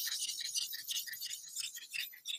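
A Takeda kitchen knife's blade being stroked back and forth on a whetstone, a quick irregular scraping hiss that grows fainter toward the end, as the bevel is worked on the stone before the 1000 grit.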